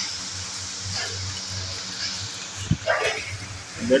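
Wire whisk beating an egg and flour batter in a metal bowl, with a steady scraping and faint strokes about once a second. A short, louder sound with a low thump comes about three seconds in.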